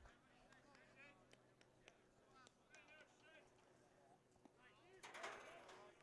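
Near silence: faint, distant voices calling out at the ballfield, over a faint steady hum.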